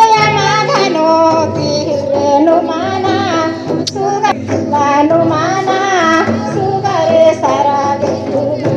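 A song with high-pitched singing over musical accompaniment.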